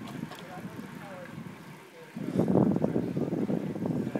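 Riding noise from a moving bicycle: wind on the microphone and tyre noise, growing louder about two seconds in.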